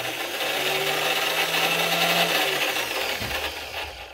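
Electric drill driving a homemade lathe, its motor running steadily under a speed control, then slowing and winding down about two and a half seconds in.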